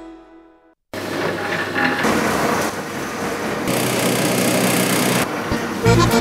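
A jingle fading out, then after a moment of silence a steady mechanical whirring from a pasta-making machine running, harsher and hissier for a stretch past the middle.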